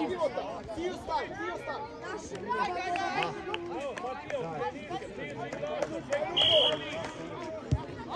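Several players' voices calling out at once across a football pitch, with a short, sharp whistle blast about six and a half seconds in.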